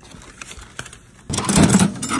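Steel military ammo can being opened, with a sudden loud metal clatter about a second and a half in as the loose hand tools inside rattle.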